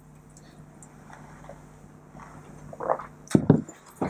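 Quiet sipping and swallowing of fizzy cola from small glasses. Near the end come a few short, sharp knocks as the glasses are set down on a table, along with a brief mouth or throat noise.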